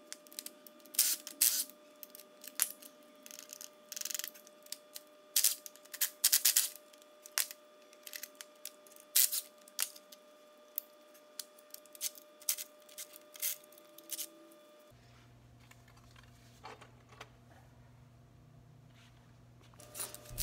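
Hand ratchet with a socket and extension working the exhaust manifold bolts loose on a 3800 V6: irregular short bursts of clicking and metal clinks, about one every half second. Near three-quarters of the way through they stop, leaving a low hum and a few faint ticks.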